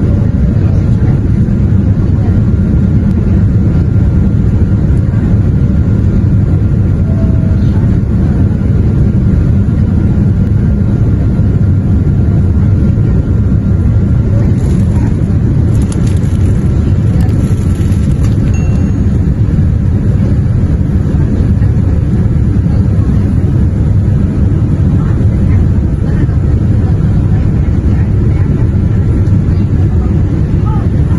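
Steady, loud deep rumble of jet engines and rushing air heard inside an airliner cabin during the climb-out, with a faint steady whine above it.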